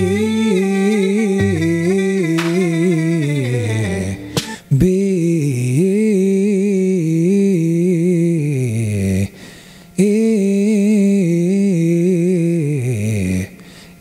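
Low male voice practising bounce runs: quick stepped, bouncing notes in phrases of about four seconds, each ending in a falling slide. There are short breaths between phrases, about four and a half seconds in, near the middle and near the end.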